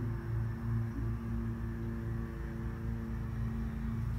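A steady low hum made of a few unchanging tones, with no change in pitch.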